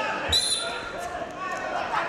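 A single sharp thump about a third of a second in as two freestyle wrestlers collide and grab each other's upper bodies, over the murmur of voices in a large hall.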